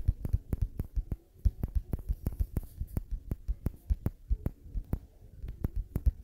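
Background beat track: a quick, slightly uneven run of deep bass thumps with sharp clicks, about five a second, with no melody to speak of.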